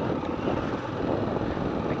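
Honda Twister motorcycle's single-cylinder engine running steadily under way, mixed with wind rushing over the microphone; the engine is in its break-in period.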